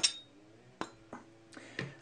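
Metal bicycle platform pedal giving one sharp metallic click with a brief ring, then a few fainter knocks as the pedals are handled and set down on a plastic desk mat.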